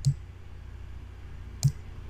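Two computer mouse-button clicks about a second and a half apart, over a faint steady low hum.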